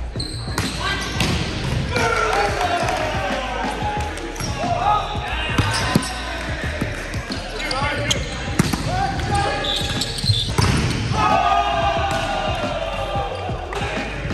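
Men's voices calling and shouting across courts during volleyball play in a gym, with several sharp smacks of the volleyball being struck.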